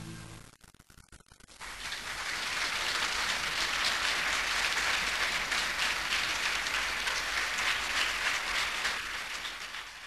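A last held chord of the bowed-string accompaniment dies away, and after about a second of hush a concert audience starts applauding. The applause swells within a second or two and carries on steadily.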